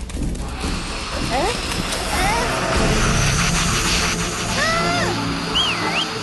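Animated film soundtrack: music under a swelling rush of noise from about a second in, with short squeaky chattering calls of cartoon ants that glide up and down in pitch, and a high swooping whistle near the end.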